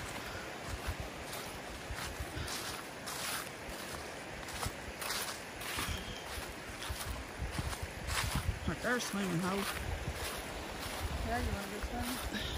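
Steady rush of creek water, with irregular crunching steps and knocks on the trail throughout. Soft voices come in briefly about nine seconds in and again near the end.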